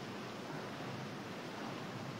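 Steady, even wind-and-sea ambience aboard a ship, a continuous hiss with no distinct events.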